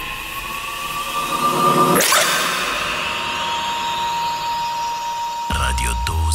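Station-ident sound design for a radio logo: a slowly rising tone, a sharp whoosh about two seconds in, then a single held tone, with a deep low sound coming in near the end.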